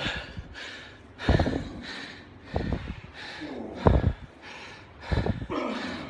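A man's heavy, forceful breathing, four hard breaths about a second and a quarter apart, with fainter breathing between them: catching his breath between heavy single reps of a rest-pause leg press set.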